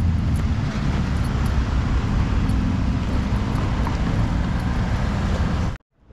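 Steady street traffic noise with a strong low rumble of passing cars, cutting off suddenly near the end.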